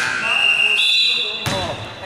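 Basketball game on a hardwood gym court: two long, high squeaks of sneakers on the floor, one after the other, then a sharp thud of the ball about one and a half seconds in.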